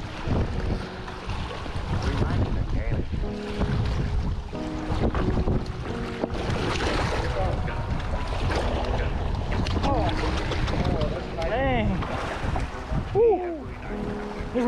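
Wind buffeting the microphone, with small waves washing against the rocky shoreline. Muffled voices come through briefly near the end.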